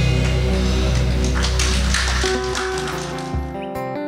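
A live band's closing chord rings out: bass, keys, guitars and a cymbal wash held and then fading. A little over three seconds in it gives way to quieter guitar music.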